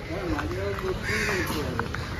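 Faint voices of people talking in the background, with a short harsh sound about a second in.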